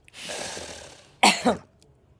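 A dog right at the microphone lets out a long breathy huff through its nose, then two short, loud vocal grumbles that slide down in pitch, as if answering back.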